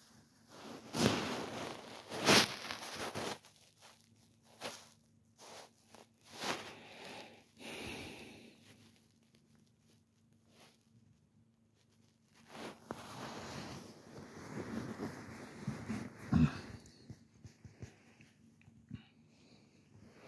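Intermittent rustling and rubbing as a hand strokes a cat's fur and the bedding close to the microphone. There are two loud brushes early on, a quiet spell in the middle, then a longer stretch of rubbing with a single knock.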